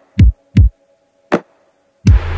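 Lofi hip-hop beat in a breakdown with the other instruments dropped out: two deep kick-drum thumps about a third of a second apart, then a single sharper snare hit about a second later, with silence between the hits.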